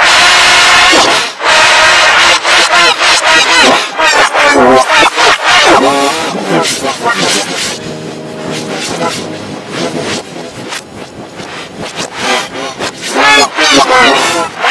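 Harsh, heavily distorted and pitch-shifted shouting and screaming played backwards, very loud. It drops about halfway through to a quieter stretch of held, droning tones, then loud backwards yelling returns near the end.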